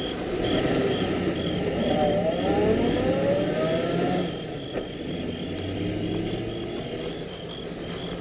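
Radio-drama sound effect of a car engine pulling away and accelerating, its pitch rising over a couple of seconds, then running on more steadily and a little quieter.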